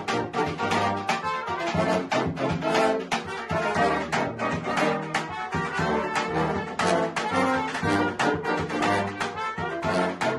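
Balkan brass band playing: trumpets and tenor horns carry the tune over a tuba bass line, with steady beats on a large bass drum.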